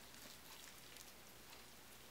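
Near silence: faint steady room hiss.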